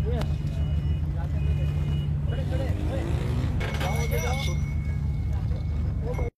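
A steady low mechanical hum, like an engine running, under indistinct voices of people in the background.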